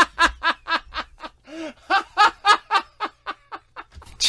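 Laughter in quick, repeated bursts, about four or five a second, trailing off near the end.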